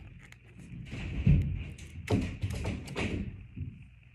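Close-up thumps and clicks of hands and scissors working a plastic drinking straw near the microphone, as the straw's end is snipped into a point. The sounds cluster from about a second in until just past three seconds.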